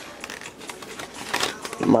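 Clear plastic blister packaging being handled and crinkled, with a few faint clicks and rustles. Speech begins again near the end.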